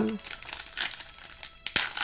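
Foil wrapper of a Yu-Gi-Oh booster pack crinkling as it is handled and torn open by hand, with one sharper crackle of tearing near the end.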